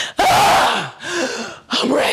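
A woman's loud wordless yelling in three bursts, the first the loudest.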